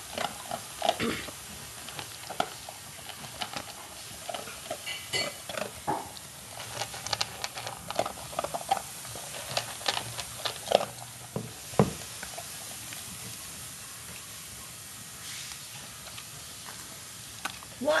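Irregular clinking and clattering of kitchenware, busiest in the first twelve seconds.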